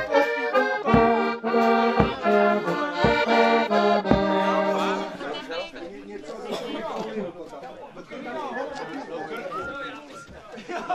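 Accordion playing a traditional tune over a low beat about once a second; the music stops about halfway through, leaving people chatting.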